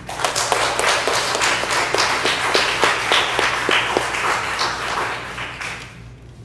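Congregation applauding: many people clapping at once, thinning out and stopping near the end.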